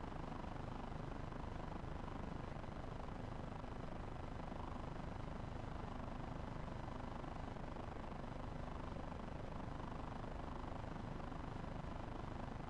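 Steady low rumbling outdoor background noise, even throughout, with no distinct sound standing out.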